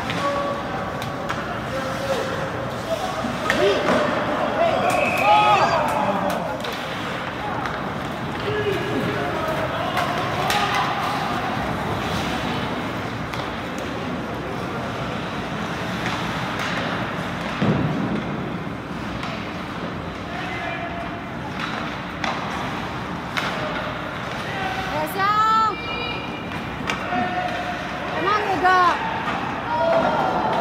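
Ice hockey rink sounds: voices calling and shouting over a steady hubbub of crowd chatter, with scattered sharp clacks of sticks and puck on the ice. The louder shouts come about five seconds in and again near the end.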